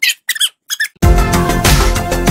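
A man's voice sped up to a high, squeaky chipmunk pitch in four short bursts. About a second in, it cuts off and loud electronic music with a steady beat starts abruptly.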